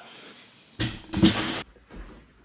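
Handling noise from the camera being grabbed and knocked about: two short bumps and rustles about a second in, then a low rumble of hands on the device.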